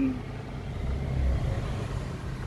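A low, steady engine rumble, swelling slightly about a second in.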